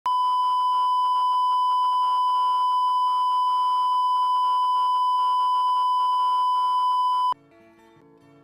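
Video-tape line-up test tone played with colour bars: a single steady, loud, high-pitched beep that cuts off suddenly about seven seconds in. Faint plucked-string music follows.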